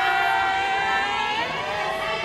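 A high voice holding one long note: it rises into the note, holds it for about a second and a half, then falls off, with other voices holding notes of their own above it.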